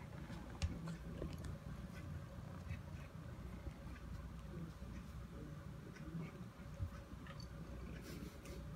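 Faint scattered taps and clicks of cats pawing at the tile floor, with two sharper clicks about half a second in and near the end, over a low rumble.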